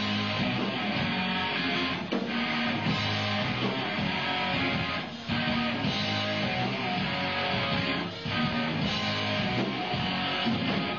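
Live rock band playing with strummed electric guitars over bass and drums, the sound dense and loud, with short breaks in the playing about every three seconds.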